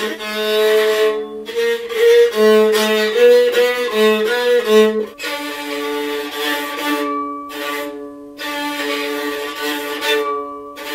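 A rebab, a bowed spike fiddle, playing a melody: short notes changing about every half second in the first half, then longer held notes from about five seconds in.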